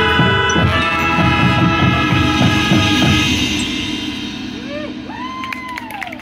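Marching band brass and percussion holding a final loud chord that breaks off about three and a half seconds in and dies away. Spectators then start cheering with rising-and-falling "woo" calls near the end.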